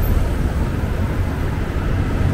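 Steady road traffic at a busy intersection, with cars passing close by over a constant low rumble.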